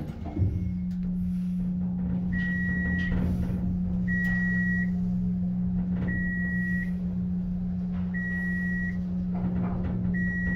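Dover elevator's electronic beeper sounding four even beeps, one about every two seconds, over a steady low hum in the elevator. A short knock comes near the start.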